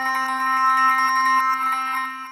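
Omnisphere soundsource 'Bouncing Piano Strings Half Rev' playing automatically as it loads: one held synth note, rich in overtones, that starts suddenly and begins to fade near the end. This is Audition Autoplay previewing the sound after a MIDI controller switch steps the browser.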